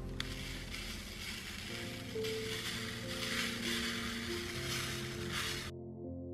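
Soft background music with slow sustained notes. Under it, a fine steady hiss of red glitter being shaken from a tube and pattering onto a glue-coated glass jar and paper, starting with a small click just after the start and cutting off abruptly near the end.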